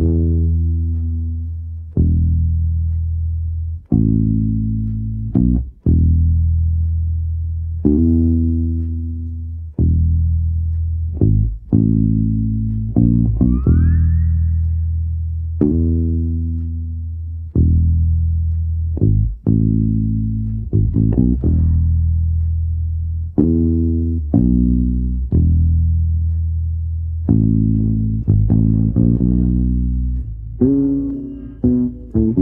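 Electric bass guitar heard on its own as an isolated studio track, playing long held notes that ring and fade, a new one roughly every two seconds, linked by short quick passing notes.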